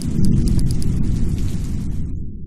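A deep, low rumbling sound effect accompanying an animated logo reveal. It starts suddenly, holds loud, and slowly dies away.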